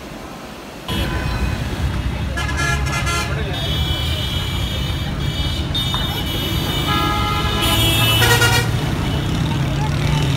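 Bus engine rumbling from inside the cabin in heavy traffic, with vehicle horns honking several times; the longest and loudest honking comes near the end. The first second is faint surf and wind before the sound cuts to the bus.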